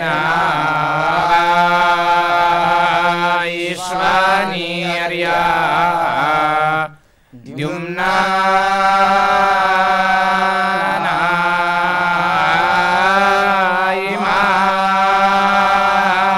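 Group of male voices chanting a Vedic hymn in unison, in long, melodically held and gliding notes, with a brief break for breath about seven seconds in.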